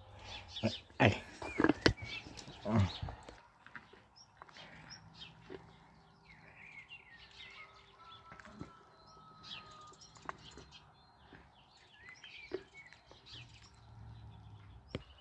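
Faint, scattered bird chirps over a quiet outdoor background, after a couple of short spoken words at the start.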